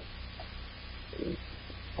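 Steady low hum of room tone, with one faint spoken word about a second in.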